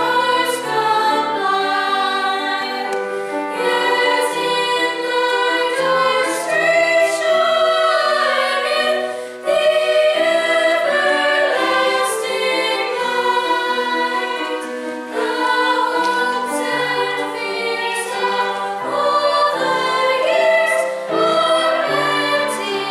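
Mixed church choir of youth and adult voices singing together in harmony, with a brief break between phrases about nine seconds in.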